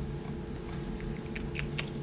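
Light clicks and rustles of a paperback book being picked up and handled, a little busier in the second half, over a faint steady hum.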